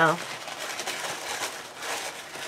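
Packaging being handled while a box of supplies is unpacked: a soft, irregular rustling with small scratchy clicks.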